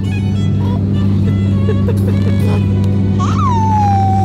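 Steady low drone of an airliner cabin in flight. A single high tone slides down in pitch near the end.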